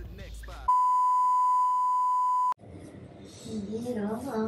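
An edited-in bleep tone: one steady beep about two seconds long that starts and stops abruptly and replaces all other sound while it lasts, like a censor bleep.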